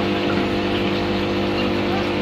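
A steady low hum with a buzzy edge, holding one unchanging pitch, over a hiss of background noise.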